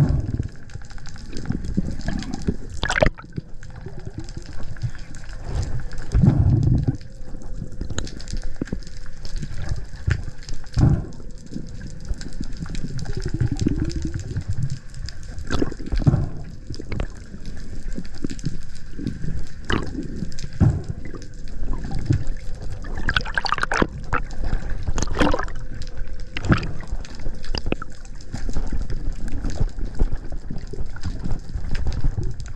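Underwater sound heard through an action camera's waterproof housing: a steady low, muffled rush and gurgle of moving water, with frequent short knocks and clicks.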